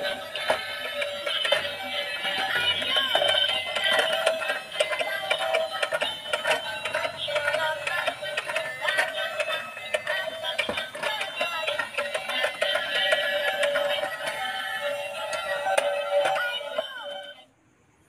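Battery-powered Tayo bump-and-go toy bus playing its electronic music tune as it drives and dances along. The music stops suddenly near the end.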